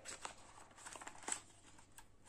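Faint crinkling and tearing of the sticker seal on a cardboard smartwatch box as it is broken and the lid flap opened, in a few soft scratchy strokes with a sharper click near the end.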